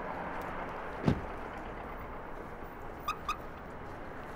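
A Mercedes coupe's door shuts with one solid thump, then about two seconds later two short high beeps from the car as it is locked with the remote.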